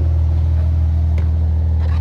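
Car engine idling steadily with a deep, even hum, with a faint click about a second in.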